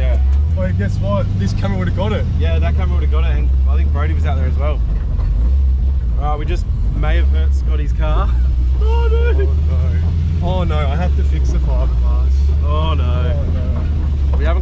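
Car engine running steadily inside the cabin, a constant low drone under people talking.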